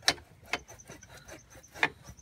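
Kawasaki ZRX1100's rear exhaust section being worked out of its collector joint by hand: metal scraping and sharp clicks, three of them standing out, at the start, about half a second in and near the end.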